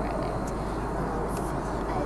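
Steady drone of a jet airliner cabin in flight: engine and air noise at an even level, with a short hiss about one and a half seconds in.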